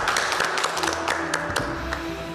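A small group of people clapping their hands, the claps dense at first and thinning out after about a second and a half, over background music with held notes.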